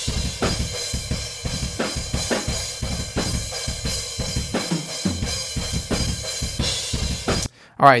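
Drum kit recorded through a room microphone, playing a metal breakdown with dense kick and snare hits under a wash of cymbals, raw with no EQ applied. The playback cuts off suddenly about seven and a half seconds in.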